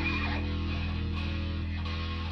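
Electric guitar and bass guitar holding a sustained chord that rings on and slowly fades.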